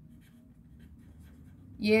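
Pen writing on paper: faint, short scratching strokes of the tip across the sheet. A woman's voice starts near the end.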